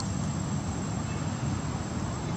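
Insects in the forest trees making a steady, thin, high-pitched drone, over a louder low steady rumble.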